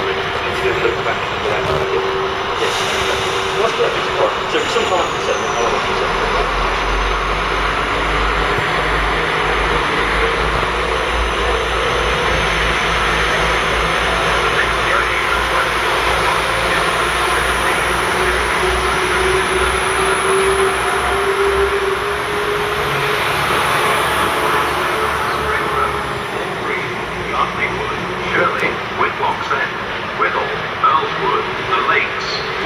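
Class 172 Turbostar diesel multiple unit running slowly along the platform past the listener: a steady diesel engine and wheel noise, with a low hum through most of it and a slowly rising tone in the middle.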